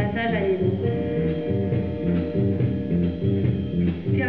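Live band playing an instrumental accompaniment with electric guitar, over a repeating low-pitched rhythmic figure and held higher notes.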